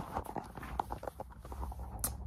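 Irregular light knocks and clicks with some rustling: handling noise from a phone being moved about in the hand.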